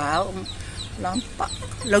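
Short high chirping calls, repeating about twice a second, typical of chicks or small birds. A woman's voice sounds at the start and a brief vocal sound comes near the middle.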